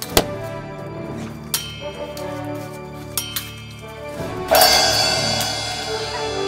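Background music with held tones, a few sharp clinks in the first half, and a sudden loud swell about four and a half seconds in.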